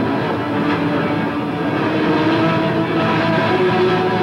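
Live punk rock band playing an instrumental stretch with no singing: loud distorted electric guitars in a dense, steady wall of sound with held notes.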